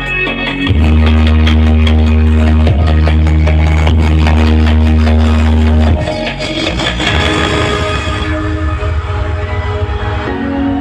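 Music played loud through a large outdoor sound system of stacked subwoofer and speaker boxes. A heavy, steady sub-bass note is held from about a second in until about six seconds in, then the music goes on without it.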